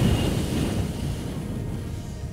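A loud rush of air noise on the microphone, heaviest in the low end, starting suddenly and fading out over about three seconds.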